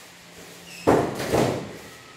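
Two loud thumps in quick succession about a second in, the second about half a second after the first, dying away within a second.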